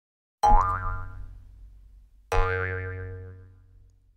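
Two springy boing sound effects about two seconds apart, each a sudden hit with a deep low thud and a wobbling pitch that fades away over a second or so.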